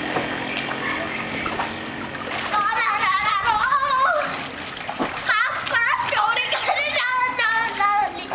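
Water splashing as young children play in an inflatable paddling pool, with a child's high-pitched voice calling out from about two and a half seconds in and again in the second half.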